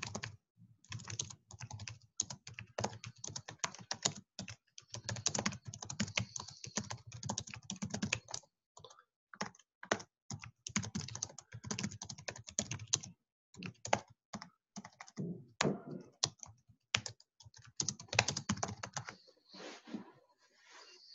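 Typing on a computer keyboard: fast runs of keystrokes broken by short pauses, sparser for a few seconds near the middle.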